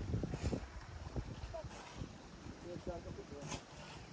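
Faint, indistinct voices in the background, with a few soft low knocks near the start.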